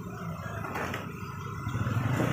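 A motorbike engine passing on the street, with a low rumble that grows toward the end, over the general noise of a busy fish market.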